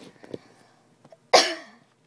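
A person coughs once, loudly and abruptly, about two-thirds of the way in, the sound dying away quickly. A few faint light taps come before it.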